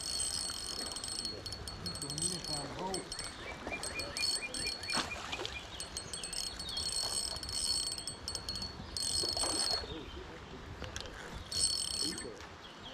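Spinning reel being cranked in short bursts while a hooked trout is played in, a high metallic whir of the gears that starts and stops every second or two.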